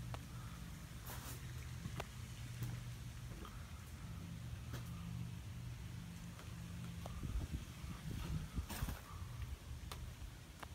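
A steady low machine hum with a few light clicks, and irregular low rumble of microphone handling from about seven seconds in.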